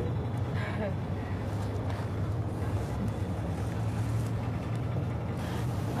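A steady low hum with an even hiss behind it, and a faint snatch of voice just under a second in.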